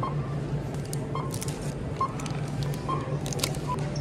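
Self-checkout barcode scanner beeping as items are scanned: five short beeps about a second apart. Under them runs a steady low hum, with brief rustling of plastic between beeps.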